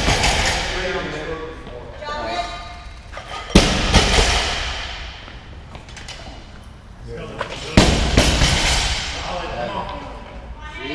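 A loaded barbell with bumper plates dropped onto the rubber gym floor twice, about four seconds apart. Each drop is a heavy thud that rings out in a large, echoing hall.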